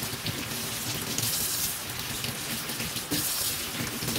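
Kitchen tap running into a stainless steel sink, the stream splashing over mangoes and hands as they are rubbed clean under it: a steady splashing hiss with small irregular drips and taps.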